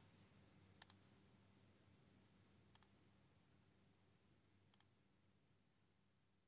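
Near silence: faint room tone with a low hum, broken by a few faint clicks, a quick pair about a second in, another pair near three seconds and a single click near five seconds.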